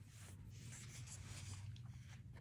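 Faint, soft rustle of a comic book's paper page being turned, lasting about two seconds, with a few light ticks as it settles near the end, over a low steady hum.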